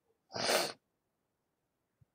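A person sneezing once: a single short burst of about half a second, a third of a second in.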